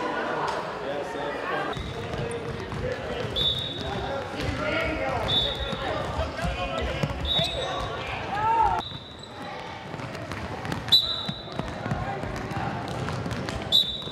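Gym floor activity: voices of a group talking in a large hall, footfalls, and short high-pitched squeaks that come about every two seconds, typical of sneakers on a hardwood court.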